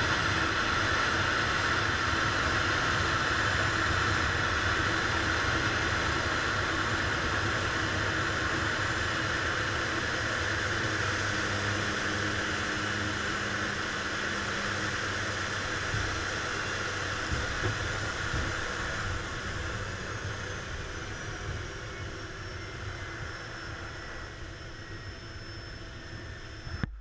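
Turboprop engine and propeller of a PAC Cresco heard from inside the cockpit during a low approach over a grass airstrip: a steady drone and hiss that gradually quietens, with a faint high whine falling in pitch near the end.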